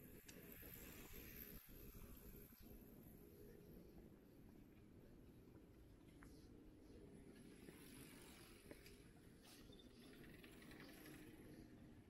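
Near silence: faint ambience of a quiet residential street, a steady low hum with a few faint ticks.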